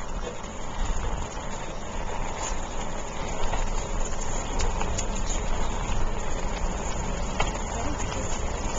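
Wind buffeting the microphone of a camera carried on a moving bicycle: a steady rumbling rush with road and tyre noise and a few light clicks.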